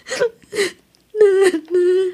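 A person whimpering in short bursts, then, a little past halfway, letting out a long, steady-pitched wailing cry.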